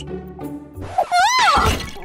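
A dish crashing and shattering near the end, over background music; about a second in there is a sharp knock and a short tone that rises and falls.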